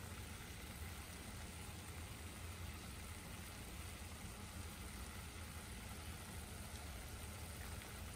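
Steady, faint low hum with a soft hiss above it, even throughout and with no distinct knocks or clicks: kitchen background noise beside a cooking pot.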